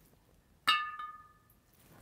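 A single clink of a pencil knocking against a glass jar of water, the glass ringing briefly with a few clear tones that fade over about a second.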